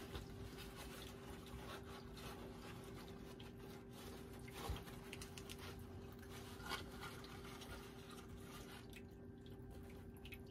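Cardboard tea leaf fortune cards being mixed around inside a cloth drawstring bag: faint rustling with a couple of light clicks, about five and seven seconds in. A steady low hum runs underneath.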